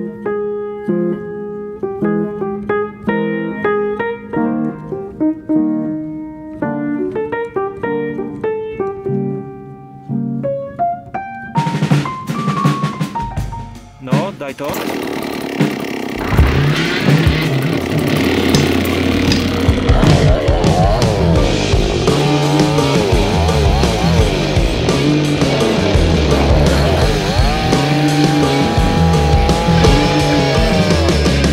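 Light plucked-string and piano background music, then, about twelve seconds in, a chainsaw starts and runs with rising and falling revs under loud heavy rock music.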